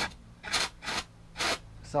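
Four short hissing puffs of insecticide pushed through a pole lance into a German wasp nest's entrance hole, the treatment going in well.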